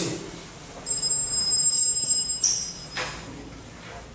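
A high-pitched electronic tone, held steady for about a second and a half, then a short chirp and a single click.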